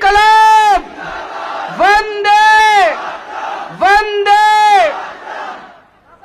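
A man shouts a slogan through a public-address microphone three times, about two seconds apart, each call rising and then held. Between the calls a crowd answers in a loud roar.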